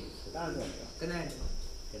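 Two short bursts of indistinct voices, about half a second and a second in, over a steady high-pitched tone that runs throughout.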